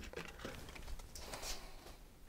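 Faint rustling and scraping with a few soft clicks, from someone moving away from an easel and handling painting materials, strongest about a second in.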